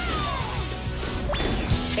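Animated action-show soundtrack: music under a crash-and-impact sound effect, with a shout that falls in pitch at the start and a quick rising whoosh about one and a half seconds in.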